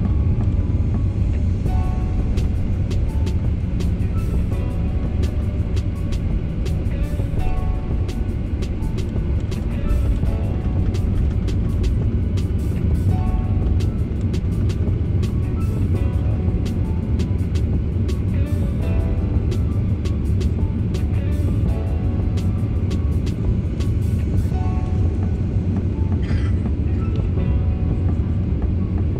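Background music with a beat and a short-note melody, played over a steady low rumble of an airliner cabin.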